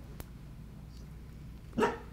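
A dog barks once, a short, loud bark near the end.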